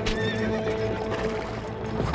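A horse whinnies with a wavering call as it is reined in sharply, over background music holding steady notes.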